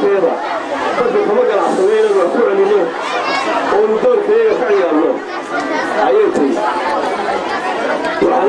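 Speech: a man speaking without pause into a corded handheld microphone.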